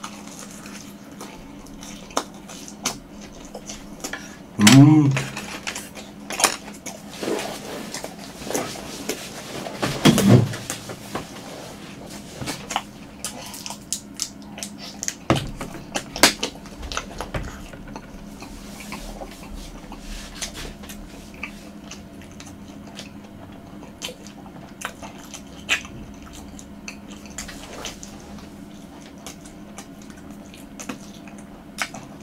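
Close-miked chewing of a breadcrumb-coated twisted-dough hot dog: a bite, then steady wet chewing with small crunches and mouth clicks. Two short, louder voiced hums come about five and ten seconds in.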